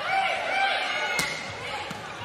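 Indoor volleyball rally: one sharp ball strike a little over a second in, with short high squeaks of shoes on the court, over crowd noise.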